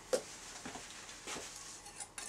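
Quiet handling noise at a workbench: a short click just after the start, then soft rustling and a few light taps as a hand moves from a notebook to a small tool.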